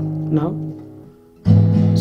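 Acoustic guitar, capoed at the fourth fret, with an E7-shape chord ringing and fading away. About one and a half seconds in comes a fresh loud strum of a C major shape.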